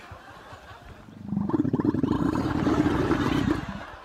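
Camel bellowing at close range: one loud, rough, rattling call that starts a little after a second in and lasts about two and a half seconds.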